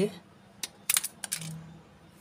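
A homemade pen-and-balloon shooter fired: a few sharp clicks about half a second to a second and a half in, as the balloon snaps and the small projectile hits and skitters on the concrete floor.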